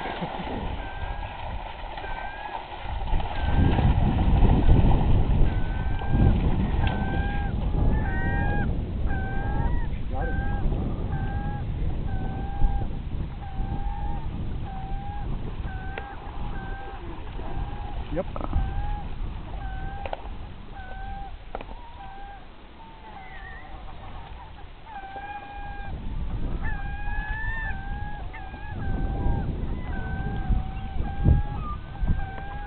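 A bird calling over and over, a short call with a quick pitch bend about once a second, over a low rumbling noise of wind and water that is heaviest in the first several seconds.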